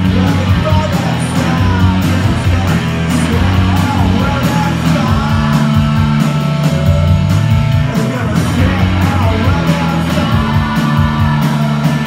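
Rock band playing live and loud: electric guitars, bass guitar and drum kit driving a steady beat.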